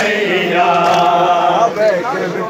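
Group of men chanting a Punjabi noha (mourning lament), drawing out a sung line with several voices together at a steady, loud level.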